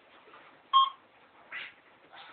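A single short electronic beep about three-quarters of a second in: one steady pitch with a fainter higher tone above it. A faint soft noise follows later.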